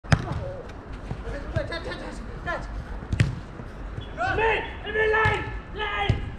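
A football struck hard with a kick right at the start, a sharp thud, then another sharp knock of the ball about three seconds in, with a few lighter ball touches between. Players shout to each other from about four seconds in.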